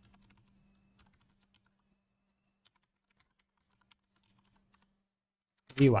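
Faint, irregular keystrokes on a computer keyboard, typing.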